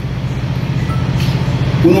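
A steady low hum fills a pause in speech, unchanged throughout. A man's voice comes back in near the end.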